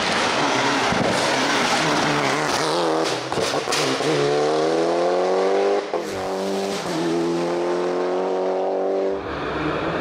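Mitsubishi Lancer Evo IX rally car's turbocharged four-cylinder pulling hard away under full throttle. The engine note rises through one gear, breaks briefly at a gear change about six seconds in, rises again through the next gear and drops away shortly before the end.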